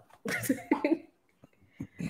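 A person says "so" and gives a short laugh, with a cough-like catch in it, lasting about a second and then falling quiet.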